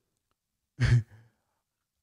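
A man's short, breathy, voiced sigh a bit under a second in, with silence around it.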